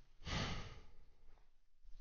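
A man's heavy sigh into a close headset microphone: one loud breath out about a quarter second in, trailing off over about a second. A lighter breath follows near the end.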